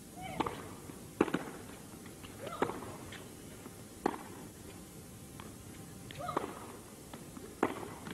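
Tennis ball struck back and forth by racquets in a rally that opens with a serve: about six sharp knocks, one every second and a half or so. A player's short grunt goes with some of the strokes.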